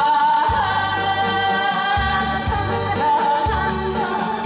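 A woman singing a Korean traditional popular song into a microphone over live amplified backing, holding a long, slightly wavering note over a steady, regular bass beat.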